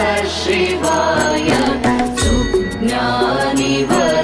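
Devotional Shiva chant sung over instrumental music, the melody rising and falling, with a deep low beat about every two to three seconds.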